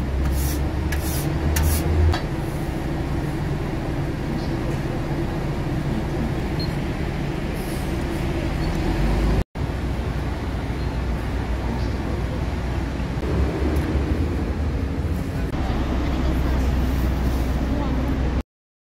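Steady street ambience: a low rumble of traffic with indistinct voices, broken by a brief dropout about halfway through.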